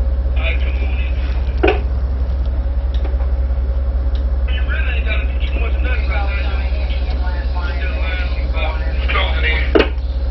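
Tugboat engines running with a steady low drone and a faint steady hum above it, with a couple of short sharp knocks.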